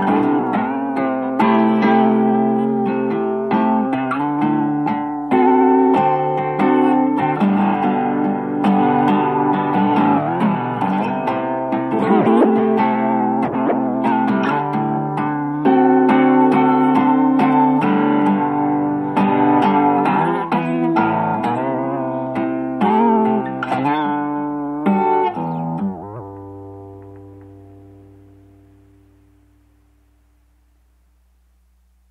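Instrumental indie rock passage led by guitar chords and picked notes. Near the end a last chord rings out and fades away.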